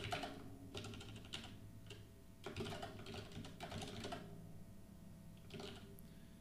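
Typing on a computer keyboard: short bursts of rapid keystrokes separated by brief pauses.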